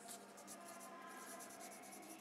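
Faint scratching of a pen point moving over a sheet of graph paper, with a low steady hum underneath.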